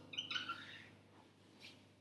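Whiteboard marker squeaking and scratching on a whiteboard as a short word is written, mostly in the first second, with a brief faint stroke near the end.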